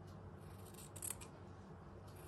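Small sewing scissors snipping through linen fabric: a few short, quiet snips about a second in.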